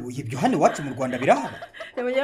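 A person chuckling, the voice swooping up and down in pitch a few times.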